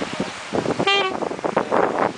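Acoustic guitar strumming, with a short, bright saxophone note about a second in.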